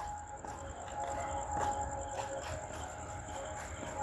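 Faint outdoor night ambience: insects trilling steadily at a high pitch, with faint distant music and a low rumble underneath.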